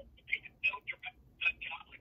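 Faint, thin telephone-quality speech in short bursts coming through a phone's speakerphone: the other party talking away from the handset.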